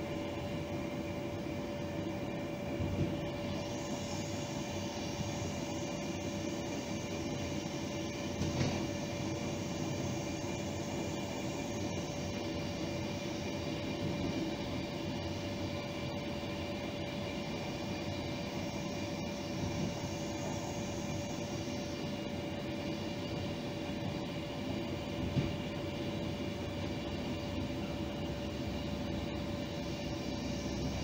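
Moving train heard from inside at the front window: a steady running rumble and hiss with a steady mid-pitched tone over it. There are a few faint knocks, and the high hiss rises for a few seconds at a time.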